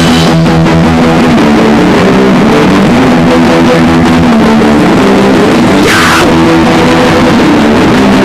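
Rock song playing: electric guitar and bass chords that change every second or so, with a brief falling hiss about six seconds in.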